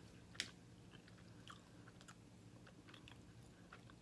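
Faint close-up chewing of glazed fried chicken, with scattered small mouth clicks and one sharper click about half a second in.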